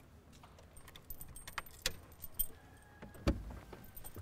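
Keys jangling in a run of light metallic clicks and chinks, with one heavier thump a little after three seconds.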